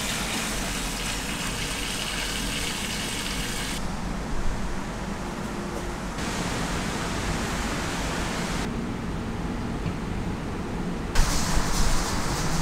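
Water running from a hose into a large stockpot of ox bones, a steady rushing noise that changes abruptly in tone every two or three seconds. In the last second it gets louder, with a few knocks, as the bone broth boils hard and is stirred.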